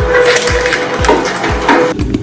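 Twin-shaft shredder blades crunching and tearing a soft rubber toy, a rough cracking noise. It plays over background music with a steady deep beat about twice a second.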